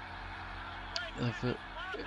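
A steady low hum made of several even tones, with faint voices coming in briefly about a second in.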